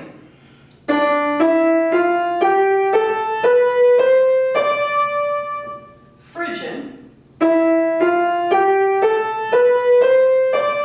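Yamaha upright piano playing the Dorian mode as a rising white-key scale from D to D: eight notes at about two a second, with the top note held. About six and a half seconds in, after a short spoken word, a second rising white-key scale begins a step higher, on E.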